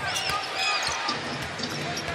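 A basketball being dribbled on a hardwood court, with a few short high sneaker squeaks, over steady arena crowd noise.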